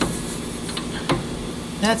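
A few light metallic clicks and taps of a nut being handled and threaded by hand onto a sway bar end link, over a steady background hum.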